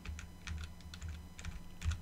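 Computer keyboard keys clicking lightly several times as the Ctrl+] bring-forward shortcut is pressed repeatedly.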